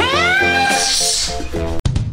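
A high-pitched, drawn-out whining cry that rises sharply and then holds, over background music. It cuts off abruptly near the end.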